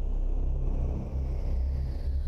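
A loud, steady low rumbling drone, a dramatic sound effect with no clear beat or melody.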